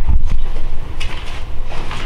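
Low, uneven rumble with a few dull knocks from movement close to the microphone.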